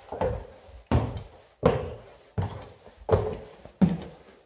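Footsteps climbing bare wooden stairs: about six heavy thuds at a steady pace, each trailing off briefly.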